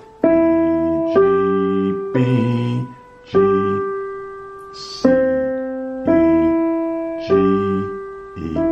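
Digital piano playing a slow left-hand broken-chord pattern: single notes struck one at a time, each left to ring and fade, seven in all about a second apart.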